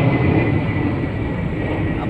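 A large aircraft passing overhead: a loud, steady engine rumble with a thin steady whine above it.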